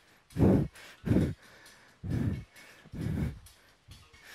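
A man's forceful, breathy exhalations close on a headset microphone, four in all at about one a second, each pushed out in time with a fast sit-up repetition.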